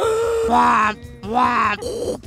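A woman's voice imitating the sound of a breast pump: two drawn-out vocal sounds with a short gap between them.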